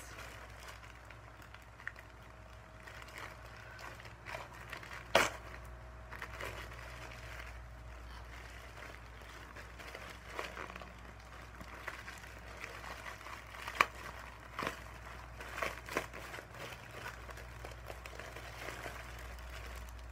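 Plastic mailing bag being handled and opened by hand: scattered rustles and crackles, with sharper snaps about five seconds in and again near fourteen seconds.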